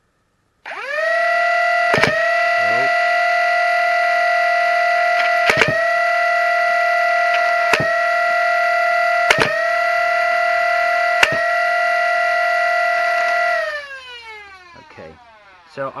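The 3D-printed Lepus Mk1 full-auto Nerf blaster's flywheel motors spin up to a loud, steady high whine. Darts are fired singly every couple of seconds, six sharp shots in all, two of them close together near the middle, each with a brief dip in the whine as the dart passes the flywheels. Near the end the motors wind down with a falling pitch.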